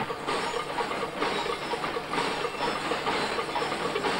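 Continuous mechanical rattling and clatter with a hiss, repeating several times a second, like a vehicle in motion.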